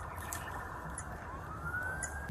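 Police car siren winding up near the end, its pitch rising smoothly, over a steady low rumble of idling vehicles.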